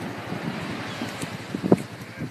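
Wind buffeting the microphone over the wash of small waves on the shore, with a brief bump near the end.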